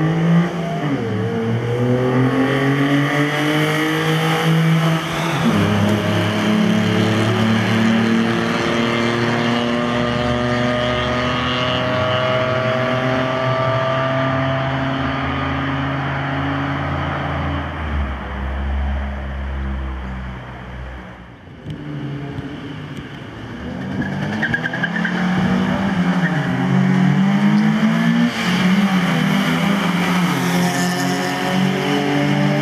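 Two small hatchback engines launching from a standing start and revving hard through the gears in repeated rising sweeps, fading as the cars pull away. From about two-thirds of the way in, another car's engine revs up and down close by.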